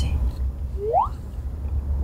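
Low, steady rumble of a van's cabin on the road, with one short rising tone about a second in.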